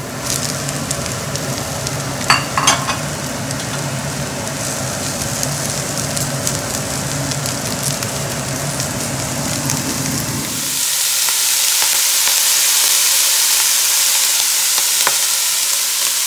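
Vegetables sizzling as they fry and are stirred in a pot, with two knocks a couple of seconds in as they are tipped in. A steady hum from the kitchen extractor hood runs underneath and stops about two-thirds of the way through, after which the sizzling is louder and clearer.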